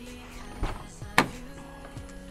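Background music, with two knocks of handling against the car's open door: a soft one about half a second in and a sharp, louder one just past a second in.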